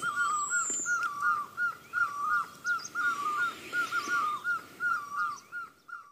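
A bird calling over and over: a quick, steady series of short whistled notes on one pitch, about three a second. A single high falling whistle sounds about half a second in.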